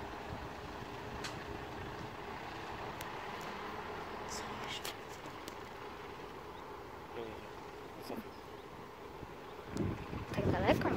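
Steady, distant running of a Volvo B10BLE city bus's diesel engine as it drives slowly across the depot yard, with a car's engine approaching.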